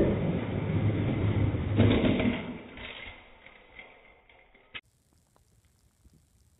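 Die-cast toy monster trucks rolling down an orange plastic drag track with a continuous rumble, a louder clatter about two seconds in as they land on the rows of toy cars, then fading away and cutting off with a sharp click.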